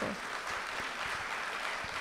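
An audience applauding steadily.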